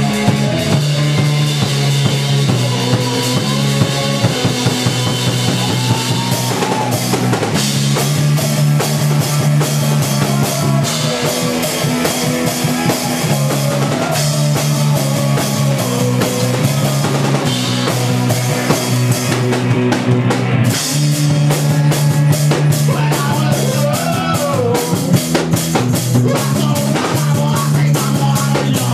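A rock band playing live: drum kit and electric guitar over held bass notes, loud throughout.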